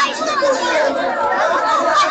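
Crowd chatter: many adults and children talking at once, their voices overlapping without a break.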